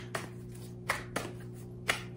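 A deck of tarot cards being shuffled by hand: about four sharp card clicks at uneven intervals, over a steady low hum.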